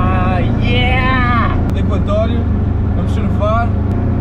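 Steady low engine and road drone inside a small car's cabin while it is driven, with a man's drawn-out, wordless vocal calls rising and falling in pitch, near the start, about a second in and again near the end.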